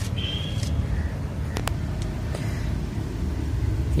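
Steady low mechanical rumble, with a couple of faint clicks about a second and a half in.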